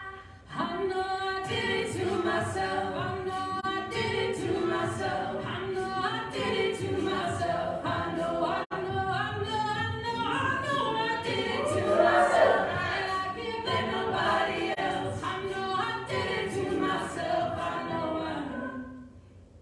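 Co-ed a cappella group singing a pop song in harmony, voices only with no instruments. The voices come in after a short pause at the very start and swell loudest about two-thirds of the way through.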